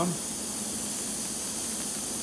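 Small brass gas-torch tip burning hydrogen-oxygen gas with a steady hiss.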